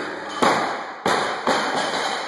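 A 105 kg barbell loaded with rubber bumper plates dropped from the shoulders onto a lifting platform: one loud impact about half a second in, then two more bounces about a second and a second and a half in.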